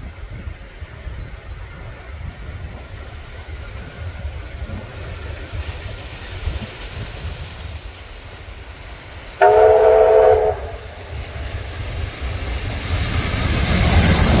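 Steam locomotive 3801 approaching at speed: a low rumble, then one whistle blast about a second long about two thirds of the way in, then its noise rising quickly as it draws close near the end.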